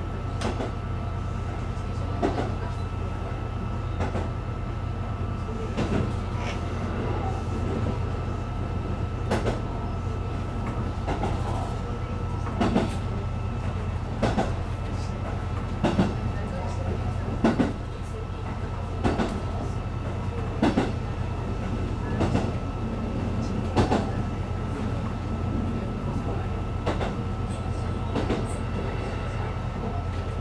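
Interior sound of a KiHa 220 diesel railcar under way: a steady low drone of the diesel engine, with the wheels clicking over rail joints in an even rhythm about every second and a half, and a thin steady high-pitched whine throughout.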